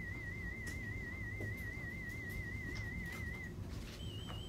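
A 2,000 Hz test tone from an online hearing test, a single steady pitch wavering slightly up and down. It stops about three and a half seconds in.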